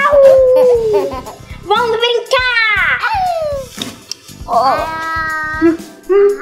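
A young girl's wordless, high-pitched vocalising: a long falling squeal trailing off a laugh, then swooping rising-and-falling glides, then a held note near the end.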